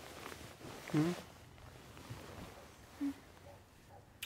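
A person murmuring a closed-mouth "mm" about a second in, with a falling pitch, then a second short hum near the end, in a quiet room.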